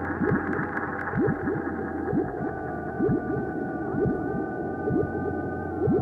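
Electronic bass-music (Florida breaks) track: syncopated bass-drum hits that slide in pitch over a steady low bass, with sustained synthesizer tones coming in about two seconds in.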